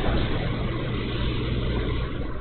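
A steady low hum under an even hiss-like noise, like a machine running.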